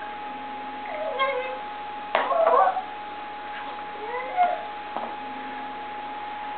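Toddler babbling in short, pitched, gliding vocalizations, with a louder burst that opens with a sharp knock about two seconds in. A steady thin hum runs underneath.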